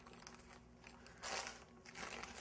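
Parchment paper crinkling under the fingers as a pie's top crust is pressed down around the rim through it. It is faint, with one short rustle a little over a second in.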